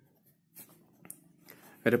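Pen writing on paper: a few faint, short scratching strokes as letters are written.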